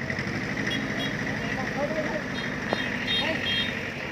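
Small farm tractor's engine running with a steady, rapid chugging as it pulls a trailer loaded with people.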